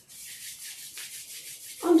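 Two palms rubbed briskly together, a dry swishing noise in quick back-and-forth strokes that stops just before the end.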